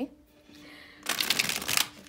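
A tarot deck being shuffled by hand: a quick run of fluttering card clicks lasting about a second, starting about a second in.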